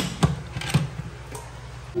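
Lid of an electric pressure cooker knocking and clicking as it is set on and twisted shut to bring the pot up to pressure, with two sharp knocks in the first second and a fainter one later, over a steady low hum.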